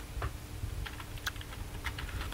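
Typing on a computer keyboard: an irregular run of short key clicks.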